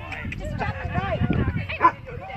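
Rottweilers barking and yipping amid people's voices, with a short sharp bark near the end the loudest sound.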